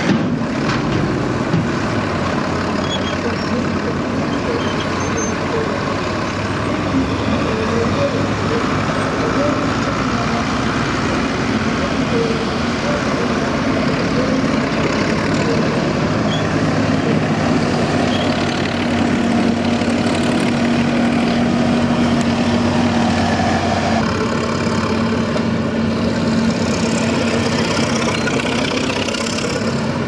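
Engines of military vehicles driving slowly past on a dirt track, a steady engine drone with a held tone. The sound changes abruptly about six seconds before the end, as a larger truck's engine takes over.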